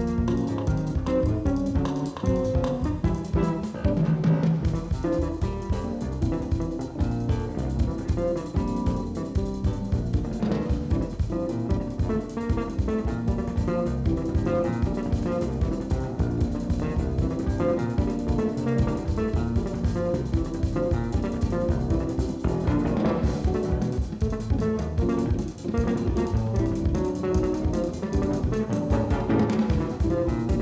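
Four-string electric bass playing a jazz tune, with a drum kit keeping time behind it.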